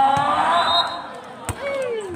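Shouting voices during a volleyball rally, with one sharp smack of the volleyball being hit about one and a half seconds in.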